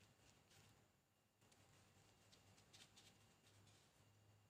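Near silence: faint soft scrapes and taps of a small spoon stirring a thick baby-cereal paste in a ceramic bowl, over a faint steady low hum.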